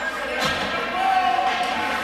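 Ice hockey game in a rink: a sharp crack from the scramble at the net about half a second in, then a spectator's drawn-out shout over the steady crowd murmur.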